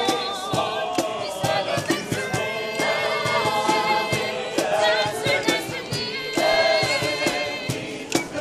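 A group of about twenty voices singing together as a choir, with a sharp, regular beat about twice a second running under the singing.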